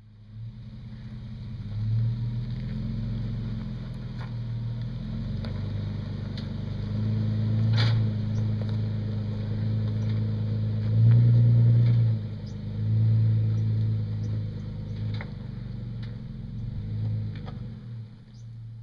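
Toyota FJ Cruiser's 4.0 L V6 engine pulling in low gear up a rocky trail, its note swelling and easing as the throttle is worked, loudest about eleven seconds in. Occasional sharp clicks and knocks, the loudest about eight seconds in, come from the rocks underfoot.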